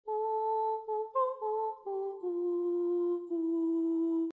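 A single voice humming a short wordless melody in held notes. It steps up once, then descends, ending on two long lower notes.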